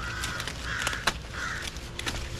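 A bird calling three times in short, harsh calls, with a sharp snap about a second in as an ear of sweet corn is pulled from the stalk.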